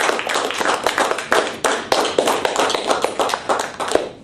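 A small audience applauding, many hands clapping fast and overlapping, dying away at the very end.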